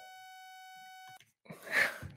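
A synthesized mosquito buzz from a Web Audio API oscillator: a steady tone held at one fixed pitch with no wavering, like a mosquito hovering in one spot, which cuts off suddenly a little over a second in. Near the end comes a short breathy laugh.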